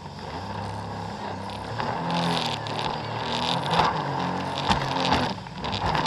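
Jet ski engine running at speed, its pitch shifting up and down. It sits under the rush of water spray and wind on the microphone, with a few sharp slaps near the end as the hull hits the waves.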